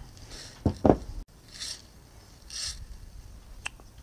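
Soft rubbing and scraping of small metal castings being set down and picked up on a workbench: a few brief shuffles and a faint click near the end.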